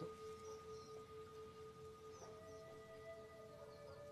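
Faint background meditation music of long sustained tones like a singing-bowl drone, with a second, higher tone coming in about two seconds in.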